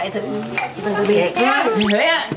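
Dry palm leaves rustling and scraping as hands work them onto the bamboo frame of a conical hat (nón lá), with voices talking over it.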